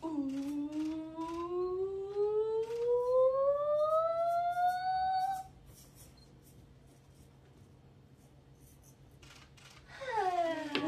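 A woman's voice holding one long humming or sung note that slides slowly and steadily upward in pitch for about five seconds, then stops abruptly. Faint small knocks and rustles follow.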